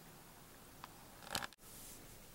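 Camera handling noise: a faint click, then a short crackling rustle about a second and a half in, cut off by a brief dropout of the sound, after which a slightly louder hiss returns.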